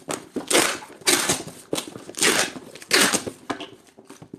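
Sealing a cardboard box with packing tape: five short rasping swishes as the tape is handled and pressed onto the cardboard flaps.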